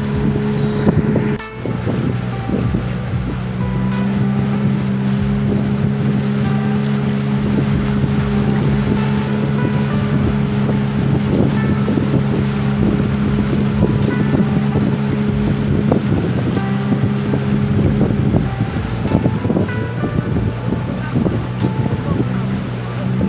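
A longboat's outboard motor running at a steady cruising speed with a constant drone, while water rushes and splashes along the wooden hull. The engine note dips briefly about a second and a half in and shifts again near the end.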